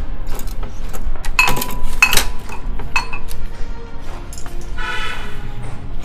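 Ceramic pot lid clinking against its serving pot a few times, each clink ringing briefly, over background music.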